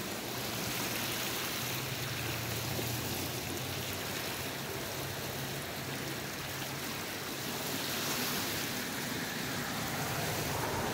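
Swollen, fast-flowing floodwater of a river rushing steadily, an even wash of water noise.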